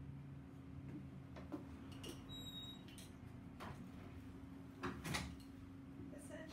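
Faint room sounds: a few soft knocks and clicks over a steady low hum, the loudest pair about five seconds in, with a brief high tone about two and a half seconds in.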